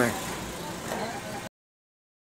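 Low car and road-traffic noise, an even rumble and hiss, for about a second and a half, then cut off abruptly into total silence.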